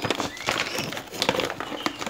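Crinkling and rustling of a foil-lined plastic bag of dry canary egg food being handled, heard as a run of irregular crackly clicks, with a few faint bird chirps in the background.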